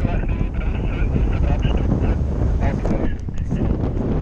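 Wind rushing and buffeting hard on the camera's microphone as a paraglider inflates and takes off.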